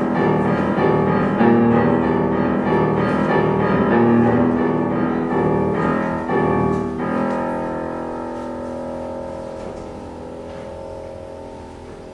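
Grand piano played live: dense, repeated chords, then about seven seconds in the playing stops and the last sound is left ringing, fading slowly away.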